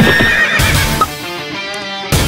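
A horse neighing amid galloping hooves over dramatic film-score music. About half a second in, the horse sounds give way to held music tones.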